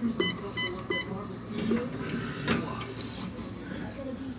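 Electronic hotel-room safe keypad beeping as a passcode is keyed in: a quick run of short beeps in the first second, then a click and a short higher beep about three seconds in.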